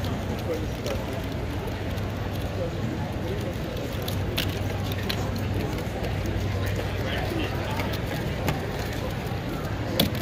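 Indistinct chatter of people in a large hall, with a steady low hum underneath and a few faint clicks.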